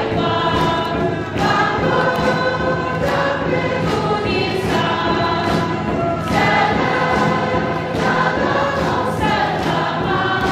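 A worship team and congregation singing a gospel song together as a crowd choir, with instrumental accompaniment and sharp percussive hits through it.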